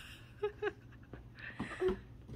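A toddler's short effortful grunts and breaths while climbing on a small plastic slide: two brief vocal sounds about half a second in, then a knock on the plastic and another short grunt near the end.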